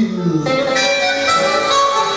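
Harmonica playing a slow blues solo over acoustic guitar. A bent note slides down in pitch at the start, then held chords sound from about half a second in.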